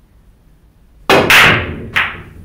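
Pool break shot: two sharp cracks in quick succession about a second in, the cue striking the cue ball and the cue ball smashing into the rack. The balls then clatter apart, with another sharp click near the end.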